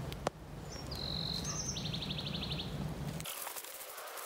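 A small bird chirping high: a couple of short notes about a second in, then a quick trill of about ten notes, over a steady low outdoor rumble.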